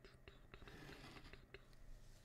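Faint scratch of a pen drawn along a ruler across paper, ruling a straight line, lasting under a second, with a few light ticks from the pen and ruler around it.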